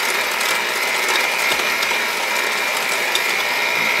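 Cuisinart 7-speed electric hand mixer running steadily, its beaters mixing oil and sugar in a glass bowl, with a steady high-pitched motor whine. It stops at the very end.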